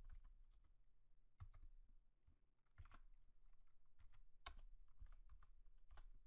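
Faint computer keyboard typing: scattered keystrokes in small clusters about every second or so.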